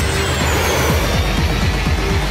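Dense trailer score and sound design with a heavy low rumble and a thin high whine that slides down in pitch over the first second and a half.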